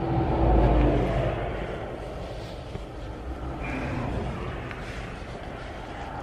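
Vehicle rumble heard from inside a car cabin: a steady low drone that swells louder in the first second, then eases off over the next couple of seconds.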